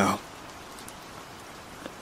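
Steady background rain, an even hiss of falling rain with faint drops, laid under a narrated story.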